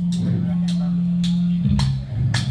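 Electric bass guitar through a live PA, holding one low note that steps down to a lower note near the end, over light cymbal taps about twice a second.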